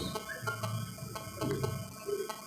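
A pause in speech with faint low murmuring from people in the room and light room noise.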